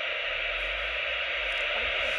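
AnyTone CB radio receiving with its squelch open: a steady hiss of band static from its speaker, with no station coming through.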